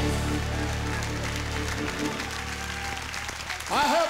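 Live gospel band holding its final chord, which fades out about halfway through, over a congregation's applause; a man's voice comes in just before the end.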